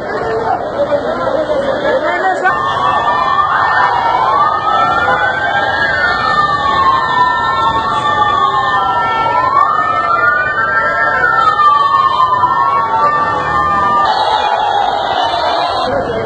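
Several sirens on traffic-police motorcycles wailing together, with slow rising and falling pitch sweeps overlapping one another over crowd noise. They start about two seconds in and stop about two seconds before the end.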